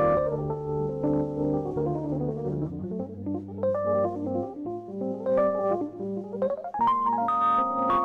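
Rhodes electric piano playing held jazz chords, then quicker single-note phrases, with a fast rising run about seven seconds in that leads into fuller, brighter chords.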